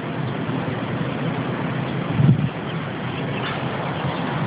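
Steady open-air background noise, a low rumble with hiss, with a brief louder low sound about two seconds in.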